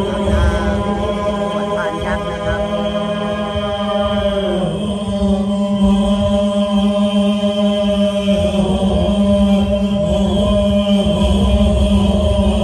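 Pali chanting by Thai Buddhist monks during an amulet consecration rite, held as a continuous drone on one low pitch.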